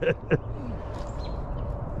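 A person's laughter in short bursts, ending about a third of a second in, followed by a steady low rumble of outdoor background noise.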